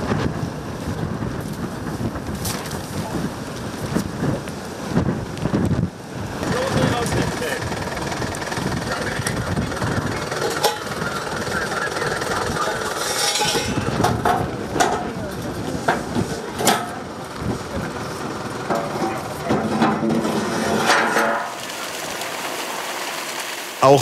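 Location sound that changes with the shots: wind at first, then people talking in the background with a few sharp clinks, and a steady rushing noise near the end.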